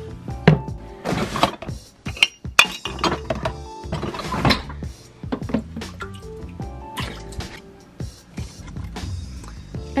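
Background music over clinks and knocks of reptile water dishes being lifted out and set down in enclosures, with some sounds of water in the dishes.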